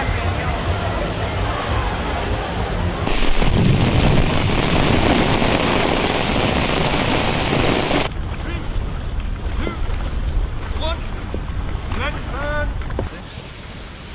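A run of outdoor city ambience recordings cut together, with people's voices in the background. A loud, steady rushing noise fills the middle few seconds, and after it the sound is quieter, with scattered voices.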